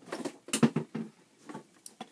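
Rustling and light knocks of items being handled and shifted on a desk, in a quick irregular cluster that is loudest about half a second in, then a few faint clicks.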